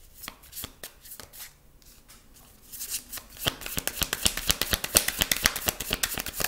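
A tarot deck being shuffled by hand: a few scattered card flicks at first, then from about three seconds in a fast, louder run of cards slapping and clicking against each other.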